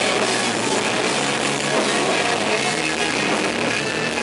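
Rock band playing live: electric guitar and drum kit, loud and steady throughout.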